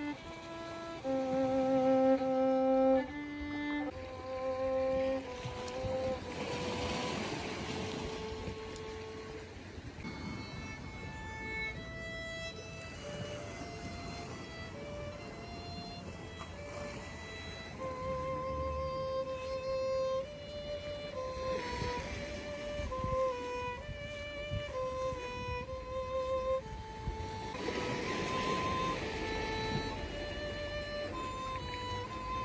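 A solo violin playing a slow melody of held notes with vibrato.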